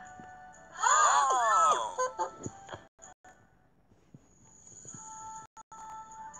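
Children's Bible story app audio: a loud sound effect of several overlapping tones that swoop up and down for about a second, then after a quiet gap soft held music notes come in near the end.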